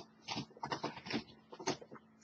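A cat scratching at a scratching post: a run of short, uneven scratching strokes, fairly faint.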